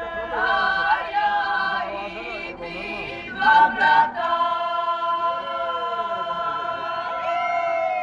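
A choir singing, holding long sustained chords; a louder swell comes a little past the middle, and the singing closes on one long held chord near the end.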